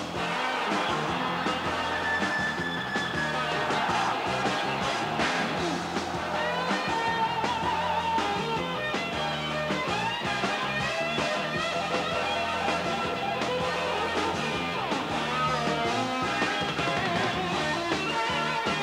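Rock music with guitar and a steady beat.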